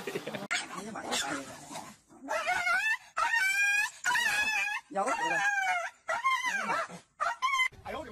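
Small dogs whining and yowling in about six drawn-out, wavering calls, each under a second long, that bend up and down in pitch. The calls follow a short stretch of clatter and knocks.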